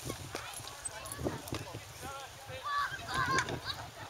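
Indistinct voices of people talking, loudest about three seconds in, with a few light knocks and a low outdoor rumble. The cannon is not fired.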